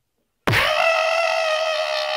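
A loud, steady high-pitched tone with many overtones starts suddenly about half a second in and holds without changing pitch.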